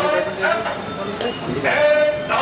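A person's voice speaking with long, drawn-out held vowels.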